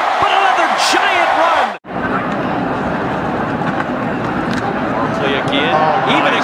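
Football stadium crowd noise, a steady din of many voices, broken by a sudden cut about two seconds in, after which a lower, steadier crowd din carries on.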